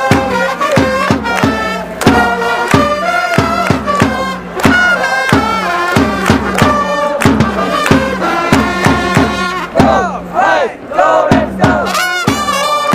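Orix Buffaloes cheering section singing and chanting a batter's cheer song in unison, led by trumpets over a steady drumbeat of about three to four strokes a second. The music thins briefly near the end.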